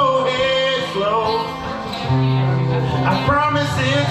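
Live acoustic music: an acoustic guitar plays steady low notes under a wavering melodic lead.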